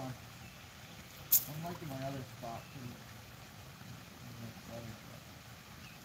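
Faint, indistinct voices talking, with one sharp click about a second in.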